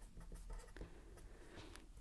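Faint sound of a felt-tip permanent marker writing on paper.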